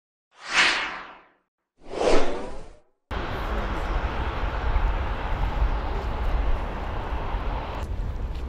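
Two whoosh sound effects of an intro sting, about a second and a half apart, each swelling up and fading. About three seconds in, steady outdoor street noise with a low rumble begins.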